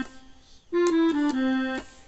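Casio LK-160 electronic keyboard on an accordion voice. A held note dies away, then three quick notes step down onto a longer low note, an F-E-D-C run.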